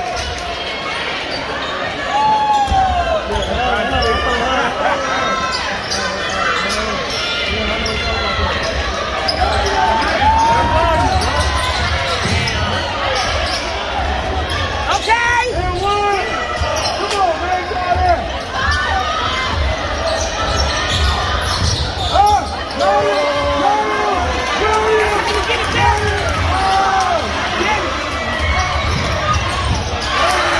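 Indoor basketball game in play on a hardwood court: a basketball bouncing, many short sneaker squeaks and thudding footsteps, with voices in the gym.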